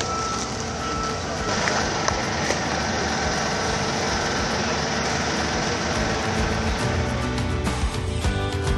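Construction trucks running steadily during a concrete pour, with a backup alarm beeping in the first second or two. Music comes in just before the end.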